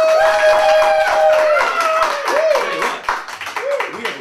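A small audience clapping, with a long drawn-out vocal cheer followed by shorter whoops.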